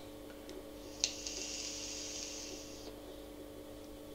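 Innokin Jem vape pen with a 1.6-ohm coil, fired at 13 watts and puffed on: a click about a second in, then about two seconds of hissing as the puff is drawn through the tank.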